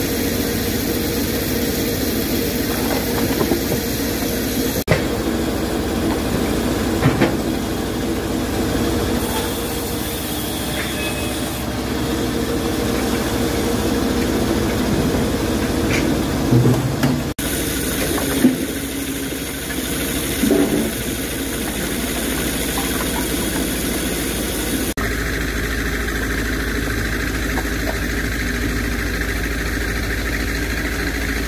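Engines of firewood machinery running steadily, the sound changing abruptly a few times, with a handful of short knocks of logs and wood.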